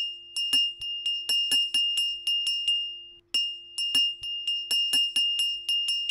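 A small bell ringing in quick repeated strikes on one high pitch, about four a second, with a short break a little past three seconds in before it starts again: the ring of a subscribe-reminder notification bell.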